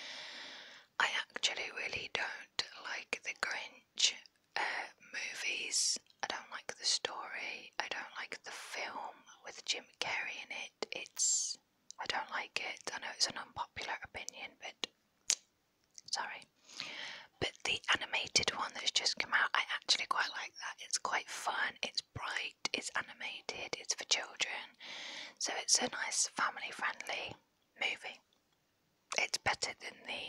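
A woman whispering close into a small clip-on microphone, talking steadily with a few short pauses.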